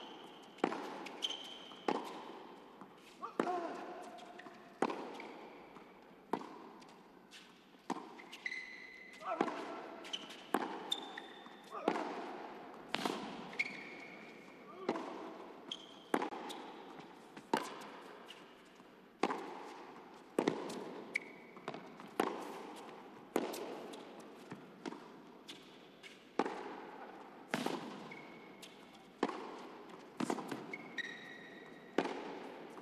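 A long tennis rally on an indoor hard court: racket strokes and ball bounces about once a second, each ringing briefly in the hall, with short high shoe squeaks between some shots.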